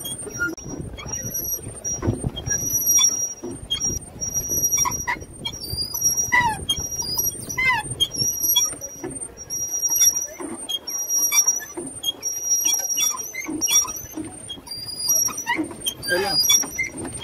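A high, thin squeak that repeats about once a second from the moving parts of a small boat as it is worked slowly across a lake, over a low rumble of wind and water. A few short falling whistles come in near the middle.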